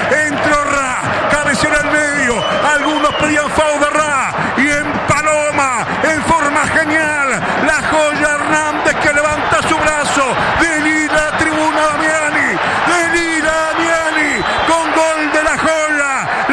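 A man's fast, continuous radio football commentary.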